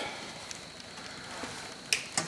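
Home-built window motor with microwave-oven coils running on its capacitors: a faint crackling hiss with a thin steady high tone, and a sharp click near the end.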